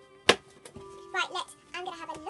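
A single sharp knock about a third of a second in, the loudest sound here, over quiet background music.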